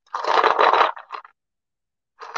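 Painted beads rolling and rattling in a paper bowl as the bowl is slid and lifted off the table, a rough scraping rustle for under a second with a short second bit just after.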